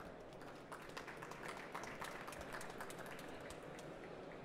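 Faint, scattered applause from an audience: many separate claps that start about half a second in and die away near the end.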